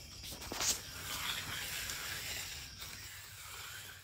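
Quiet, gritty scraping of a hand concrete edger drawn along the edge of a wet concrete slab, uneven and rising and falling as the tool is pushed and lifted.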